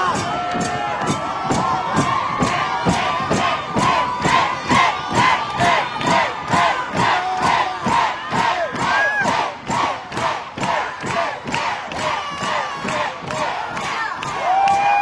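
Large concert crowd cheering and shouting in rhythm, a short shout on each of a steady run of sharp beats about three times a second.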